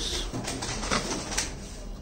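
Small SG90 hobby servo motors running in short, uneven bursts as they tilt a small solar panel toward a light, with a couple of sharp clicks.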